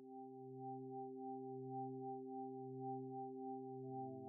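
Layered steady electronic meditation tones: a low hum with several clear higher tones above it, the low one swelling and fading a little under twice a second. A further tone joins shortly before the end.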